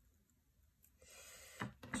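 Near silence for the first second, then faint handling noise of a paper gift pouch and mesh ribbon being adjusted by hand, with a short click about one and a half seconds in.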